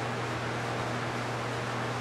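Room tone: a steady hiss with a constant low hum underneath, and no distinct event.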